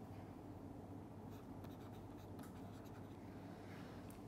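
Faint tapping and scratching of a stylus writing a word on a tablet screen, in a cluster of short strokes through the middle and another near the end, over a low steady hum.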